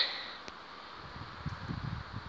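Faint, steady outdoor background hiss, with one faint click about half a second in.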